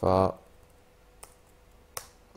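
Two computer keyboard key presses, a faint click about a second in and a sharper one near the end, as the cursor is moved along a line of code in a terminal. A short spoken syllable comes just before them.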